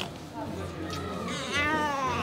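A baby crying: one short wail about one and a half seconds in, its pitch rising and then falling, over faint voices.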